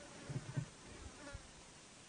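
Faint buzzing of flying insects such as flies over quiet outdoor hiss, with a few soft low thumps in the first second and a half.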